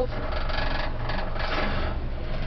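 Steady, rapid mechanical whirring of a cable car gondola running along its cable, heard inside the cabin.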